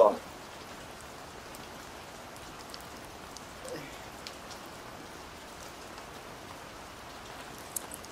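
Steady light rain pattering on wet paving, with scattered sharper drip ticks.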